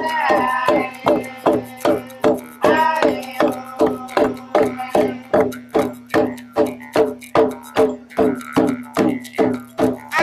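Huli men singing a chant over a steady held drone, beating kundu hand drums in an even rhythm of about three beats a second.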